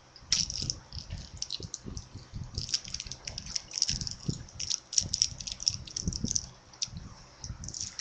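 Plastic candy packaging crinkling and rustling as it is handled: irregular crackles and clicks with soft bumps.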